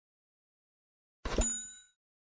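Notification-bell sound effect from a subscribe animation: a click and a bright bell ding about a second and a quarter in, ringing out and fading over about half a second.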